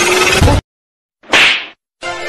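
A dense sound cuts off suddenly about half a second in. After a brief silence comes one short whoosh, under half a second long, followed by silence again.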